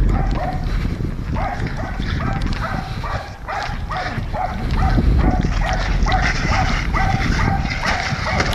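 American Pit Bull Terrier barking in short, repeated barks, about two or three a second, while straining against a weight-pull harness.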